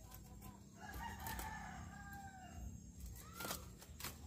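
A rooster crowing faintly: one long call of about two seconds whose pitch bends down at the end, then a short arched note just after three seconds.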